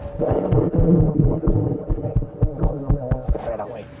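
Clip-on lavalier microphones pressed against clothing during a hug: muffled rubbing and a run of low thumps.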